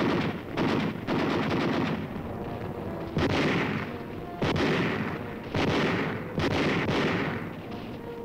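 Small-arms gunfire, machine-gun and rifle: about seven loud bursts and shots spaced roughly a second apart, each trailing off in an echo. There is a rapid run of shots about a second in.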